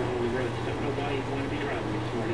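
A man's voice talking, in the manner of a TV or radio news report about road flooding, over a steady low hum.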